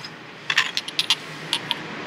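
Glazed ceramic salt and pepper shakers clinking against one another as a hand picks through a cardboard box of them: a run of light, sharp clinks starting about half a second in.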